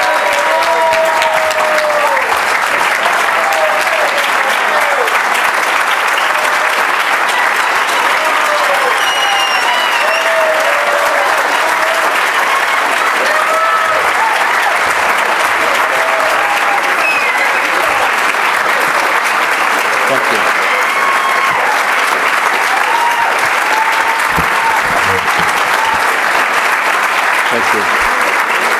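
A large audience giving a long, steady standing ovation: dense clapping throughout, with voices cheering and calling out over it.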